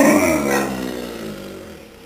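Alaskan Malamute's drawn-out "talking" vocalization, falling in pitch and fading away over about a second and a half.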